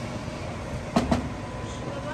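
A long wooden paddle stirring rice in a large metal pot, with two sharp knocks of the wood against the pot about a second in, over a steady low rumble.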